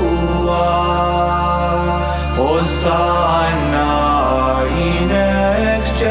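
Gregorian chant sung in Latin over sustained low accompanying tones. The low tones shift pitch about half a second in and again near four seconds in.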